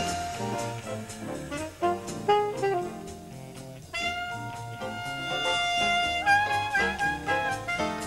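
Alto saxophone playing an improvised jazz solo over the band's rhythm section: quick phrases of short notes, then one long held note about halfway through before the line moves up again.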